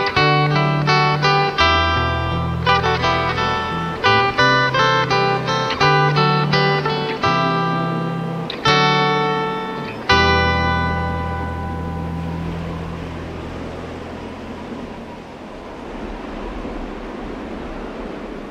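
Clean guitar picking a quick run of single notes over held low bass notes, then two struck chords, the second left to ring out and fade slowly over the last several seconds. It is the quiet closing passage of a metalcore album's interlude track.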